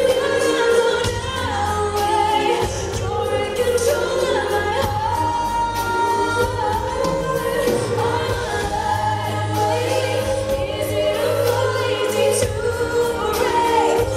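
A woman singing a slow pop ballad live into a handheld microphone, with band accompaniment under the sustained, gliding vocal line.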